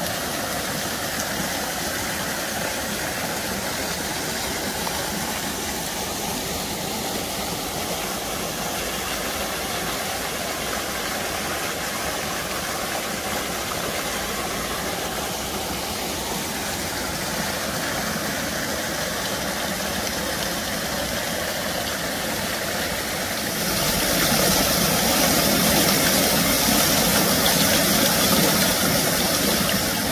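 Water pouring from a stone fountain spout and splashing into a stone basin, a steady rushing noise that gets louder about three quarters of the way through.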